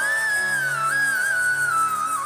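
Live band's instrumental introduction to a Hindi film song: a flute melody stepping downward with gliding notes over sustained keyboard chords, with light high percussion ticking about three times a second.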